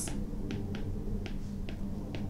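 Light, irregular clicks of a stylus tip tapping a tablet screen as words are hand-written, about five or six small taps in two seconds, over a steady low hum.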